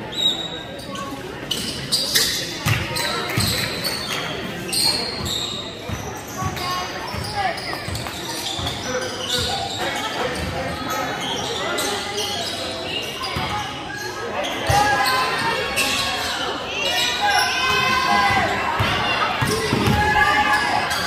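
A basketball bouncing on a hardwood gym floor, with repeated short thuds, over voices and shouts from players and spectators that echo in the large gym. The voices grow louder in the last few seconds.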